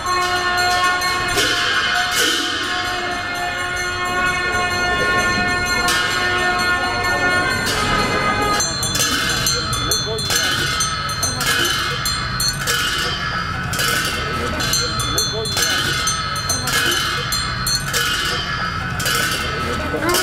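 Metal ritual bells or cymbals ringing: several lasting ringing tones, then from about eight seconds in a steady beat of sharp strikes, roughly three every two seconds, each ringing on, with voices underneath.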